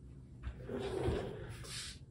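A soft rustling handling noise that starts about half a second in and lasts over a second.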